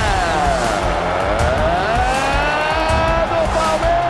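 Football TV commentator's long, drawn-out goal shout over crowd noise, the held cry sliding slowly down and up in pitch.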